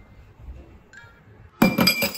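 Dishes clinking together in a stainless steel kitchen sink: a quick cluster of sharp clinks with a short ringing tail, about a second and a half in.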